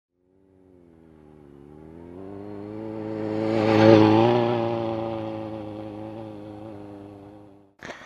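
Sport motorcycle engine running at steady revs as the bike approaches, passes close by about four seconds in, and moves away, its sound swelling to a peak and then fading. The sound cuts off suddenly near the end.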